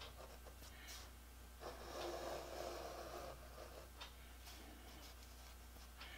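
A pen writing on a lined notepad clipped to a clipboard: faint scratching strokes, the longest starting about a second and a half in and lasting nearly two seconds, over a low steady hum.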